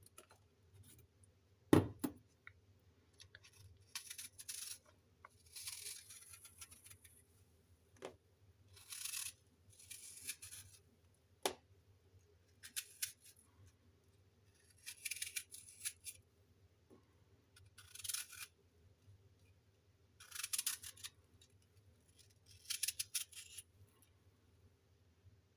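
A paring knife peeling and cutting apple: a series of short, crisp scraping strokes through the fruit every second or two. A single sharp knock about two seconds in is the loudest sound.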